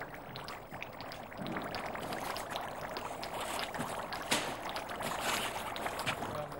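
Thick wallpaper paste bubbling and gurgling as gas and air are blown through it from pipes beneath, over a steady hiss. It grows louder about a second and a half in, with a brief louder burst of hiss a little past four seconds.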